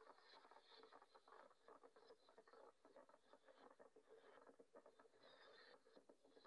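Near silence: only a very faint, dense crackle of tiny clicks.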